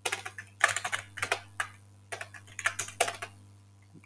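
Typing on a computer keyboard, with irregular short runs of keystrokes separated by brief pauses.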